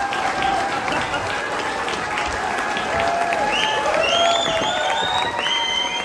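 Audience applauding, with voices in the crowd and several high, held tones joining in from about halfway through.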